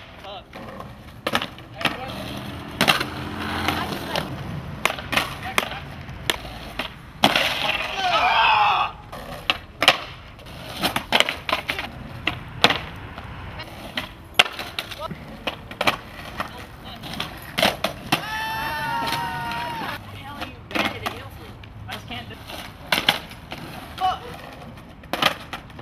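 Skateboards on asphalt: wheels rolling and many sharp pops and clacks of the boards snapping, landing and clattering on the pavement as flat-ground tricks are tried. Onlookers shout twice, about eight seconds in and again near nineteen seconds.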